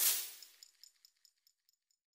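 A short whoosh transition sound effect that swells and dies away within about half a second, trailing a faint repeating echo, then dead silence.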